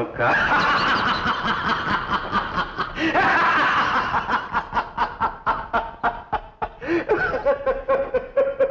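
A man laughing loudly and at length. Long stretches of laughter give way to rapid rhythmic ha-ha pulses, about three or four a second, in the second half.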